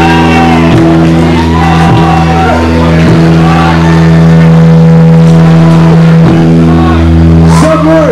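Punk rock band playing live and very loud: distorted electric guitar and bass hold long sustained chords, changing chord a few times, with shouting over the top.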